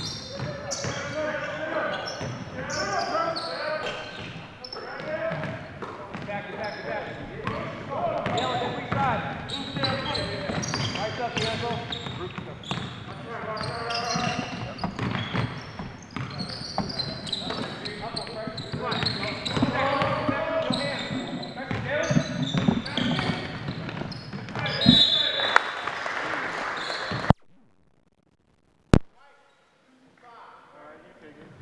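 Basketball game on a hardwood gym floor: the ball bouncing and thudding among players' indistinct shouts and calls. The sound drops out abruptly near the end, leaving near silence broken by a single click.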